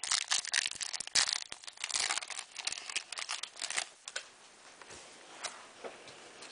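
Foil trading-card pack wrapper being torn open and crinkled in the hands: a dense run of crackling for about four seconds, then quieter handling of the cards.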